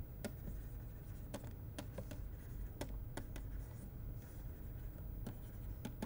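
A stylus tapping and scratching on a pen tablet as words are handwritten: irregular light clicks over a steady low hum.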